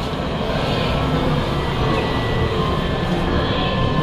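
Steady background din of an indoor amusement arcade, a continuous even rumble and hiss with faint thin electronic tones from the game machines partway through.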